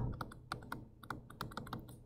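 Stylus tapping on a tablet screen while handwriting, a quick, irregular run of light ticks.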